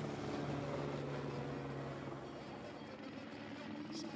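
Faint race-side ambience: a low, steady engine hum fades out about two seconds in, leaving a soft background haze.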